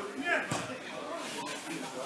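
Indistinct voices of people talking, with a short knock about half a second in.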